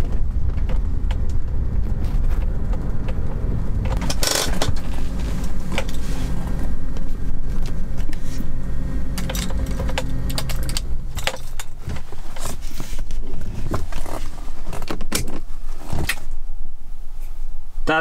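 Cabin sound of a 1987 BMW 525e's 2.7-litre straight-six running at low revs while driving, with steady road rumble. The rumble eases after about ten seconds, and scattered clicks and rattles come through, more of them in the second half.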